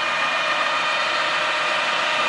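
Steady machinery noise: an even hiss with a few faint constant tones, unchanging throughout.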